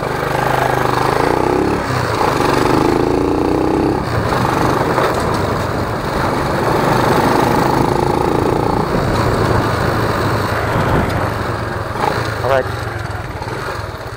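Small motorcycle engine running under way, with wind rushing over the bike-mounted microphone. The engine note changes a couple of times in the first few seconds.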